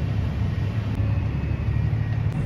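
Steady low engine drone heard from inside the cab of a John Deere 8235R tractor, running under load as it pulls a grain cart alongside a combine that is unloading into it.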